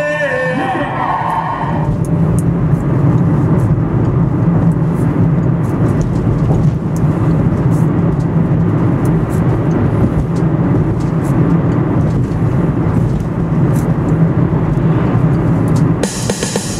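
Steady low rumble of a moving car heard from inside the cabin: engine and tyre noise on the road. A song fades out in the first two seconds.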